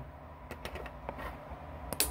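A few faint, scattered clicks and light handling noise of a hand-held camera being moved about.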